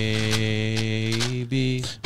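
A man's voice holding one long, low droned note at the end of a chant, dipping slightly in pitch and breaking off about a second and a half in, then a second, shorter held note.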